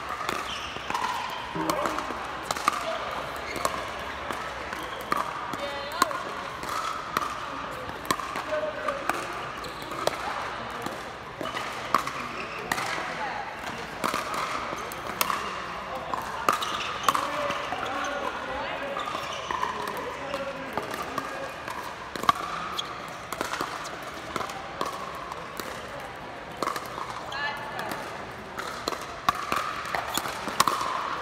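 Pickleball paddles striking a hard plastic pickleball in rallies: sharp, short pocks every second or two, with the ball also bouncing on the hard court.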